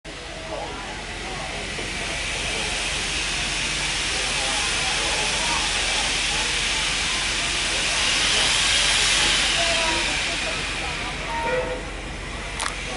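Reading & Northern 425's steam-hauled passenger train rolling along, heard from the coach: a steady hiss of steam and rolling-train noise that builds, is strongest about three-quarters of the way in, and eases near the end.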